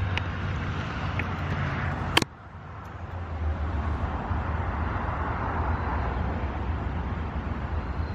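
Steady outdoor road-traffic noise, a low rumbling hum of vehicles. A sharp click a little over two seconds in, after which the sound drops away briefly and builds back.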